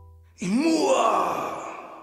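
The song's last chord fades out. About half a second in, a short, loud, breathy voiced cry starts suddenly, slides up and back down in pitch, and fades away over about a second and a half.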